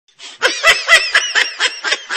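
A high-pitched laugh in quick, regular bursts, about four a second.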